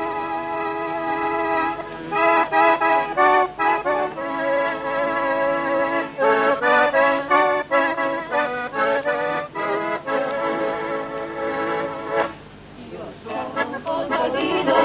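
Accordions playing the introduction to a folk song in held chords with changing notes, breaking off briefly near the end as the choir comes in.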